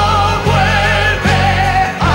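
Musical-theatre number with orchestra and choir: sung voices holding long notes with vibrato over steady bass chords that change about every second.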